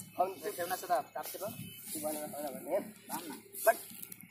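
People talking indistinctly, in short broken phrases, with a brief louder call near the end.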